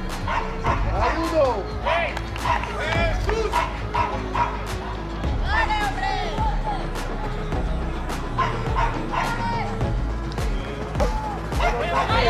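Music with a steady beat plays throughout, with voices shouting over it and repeated short, yelping barks.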